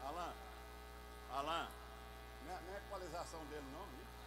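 Steady electrical mains hum, with faint voices talking in short snatches about a second and a half in and again near the end.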